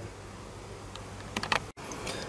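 Faint handling noise from a small screwdriver and plastic parts, with a few light clicks about a second and a half in.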